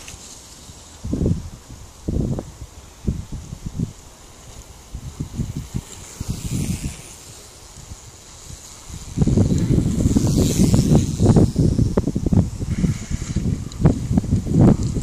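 Wind buffeting the microphone in irregular low gusts, turning into heavier, continuous rumbling about two-thirds of the way through.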